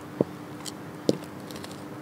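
Two footsteps of 10-inch-heel platform boots on concrete pavement: short, sharp knocks about a second apart, over a faint steady hum.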